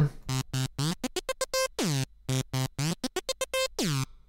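Omnisphere software synthesizer playing a fast, stuttering pattern of short pitched notes that cut off sharply between them. A couple of notes sweep downward in pitch, about two seconds in and again near the end.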